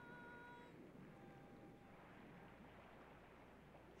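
Near silence: a faint low hum, with a faint steady high tone that stops under a second in.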